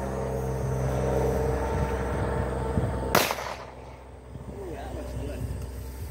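A single handgun shot about three seconds in: one sharp crack with a short echo, over a steady low hum.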